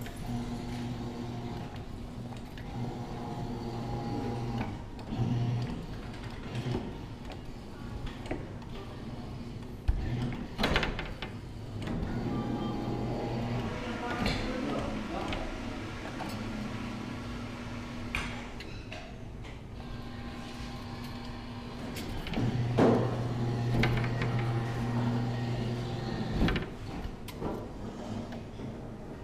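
Claw machine gantry motors humming in stop-start stretches of a few seconds as the claw moves, with sharp clicks and knocks between, over arcade background noise.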